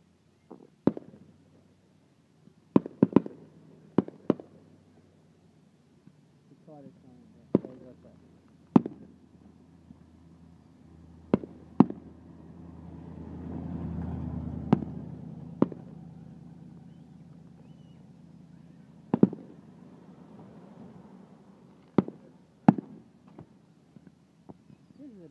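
Fireworks going off: a scattered series of sharp bangs at irregular intervals, some coming in quick clusters of two or three. Midway a low rumble swells and fades.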